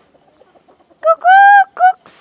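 Domestic rooster crowing once, about a second in: short opening notes, one long held note, then a short closing note.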